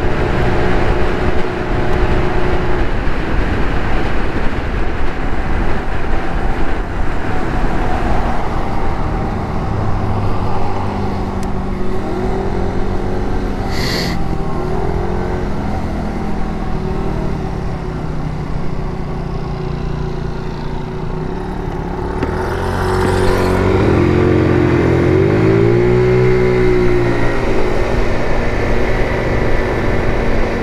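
GY6 scooter's single-cylinder four-stroke engine running under way, with wind noise on the microphone at road speed. In the second half the engine pitch rises and falls as the scooter slows and pulls away again, with a marked rev up and back down near the end. A brief sharp sound comes about fourteen seconds in.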